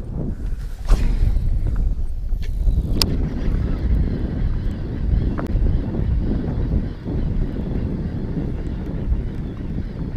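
Wind buffeting the microphone: a steady low rumble, with a few faint clicks.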